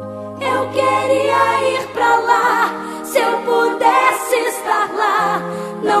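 A choir singing a gospel hymn in Portuguese over sustained instrumental chords and a low bass. The chords sound first, and the voices come in under a second later.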